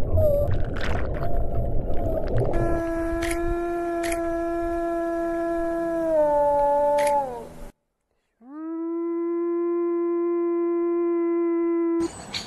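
Grey wolf howling twice. The first howl is a long held note that drops in pitch as it ends. After a short silence, the second howl swoops up and holds steady, then is cut off abruptly. Before the howls comes a few seconds of underwater rumble with a brief whale call.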